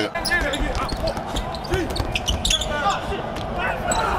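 Live basketball game sound on a hardwood court: a ball being dribbled, heard as a run of short sharp knocks, with brief squeaks and faint voices over the arena's steady low background noise.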